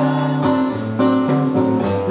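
Acoustic guitar strummed in a steady rhythm, the chords changing every half second or so, with no voice.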